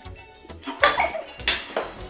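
Kitchen utensils knocking against a pot: two sharp clinks, about a second in and again half a second later, over background music.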